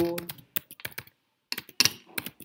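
Typing on a computer keyboard: a quick run of separate keystrokes, a pause of about half a second, then another run.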